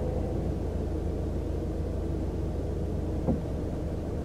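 A car's engine idling as a steady low rumble, heard from inside the cabin while the car waits at a red light, with one brief sharp click about three seconds in.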